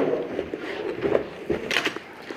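Clothes and shoes being handled on a shop counter: fabric rustling, with a sharp knock about one and a half seconds in as an item is set down, and a short hiss just after.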